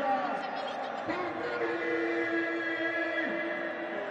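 Stadium crowd of football fans shouting and chanting, many voices at once, with one long held note from about a second in until past three seconds.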